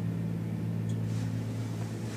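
Steady low electrical hum, with a faint click about a second in.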